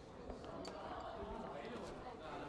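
A few scattered footsteps on a hard floor over faint background murmur.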